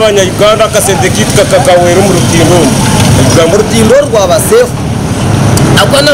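A man speaking over steady road traffic noise. His voice stops a little before the end.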